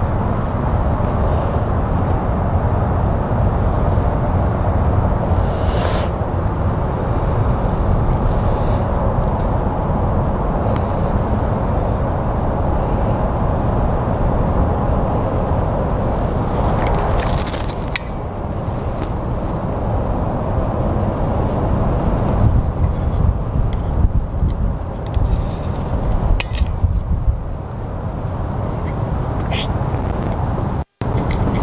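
Steady, fairly loud low outdoor rumble throughout, with a few short clicks and rustles in the second half.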